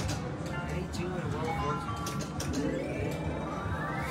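Wheel of Fortune 3D video slot machine playing its electronic reel-spin jingle while the reels turn, with a tone rising steadily over the last second and a half as the final reel keeps spinning after two sevens have landed.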